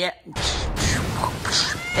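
A man's voice making loud, high-pitched nonsense noises, rising in pitch near the end.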